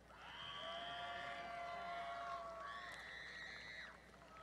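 Faint held horn-like tones: one steady sound of about two and a half seconds, then a higher one lasting about a second.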